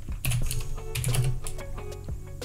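Typing on a computer keyboard: a quick, uneven run of keystroke clicks as a web search is entered, over background music.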